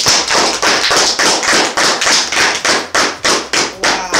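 Two people clapping their hands in a steady rhythm, about three to four claps a second.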